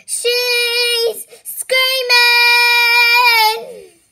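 A young girl singing unaccompanied, holding two long vowel notes on nearly the same pitch. The first is short, and after a quick breath the second is held about two seconds and slides down as it ends.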